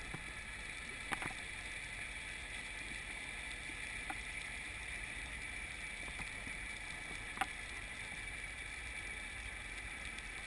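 Underwater ambience: a steady muffled hiss with a few scattered sharp clicks, the loudest about seven seconds in.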